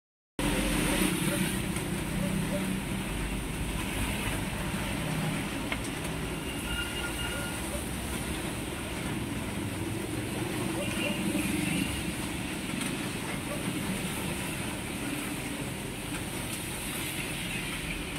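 Steady rumbling background noise with a low hum and a hiss, holding at about the same level throughout, with no speech.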